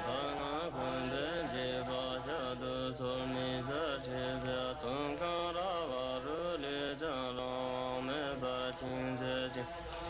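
Buddhist monks' prayer chant: voices chanting a melody that holds notes and bends up and down over a steady lower drone.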